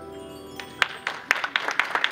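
The final chord of acoustic guitar and piano rings out and fades, then an audience starts clapping a little over half a second in, the applause building in rapid, irregular claps.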